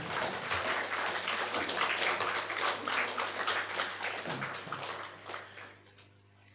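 Audience clapping: a round of applause that thins out and dies away over the last second or so.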